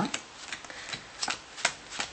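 Playing cards being dealt one at a time from the hand onto a pile on a cloth card mat. Each card gives a short flick or snap, several of them roughly half a second apart.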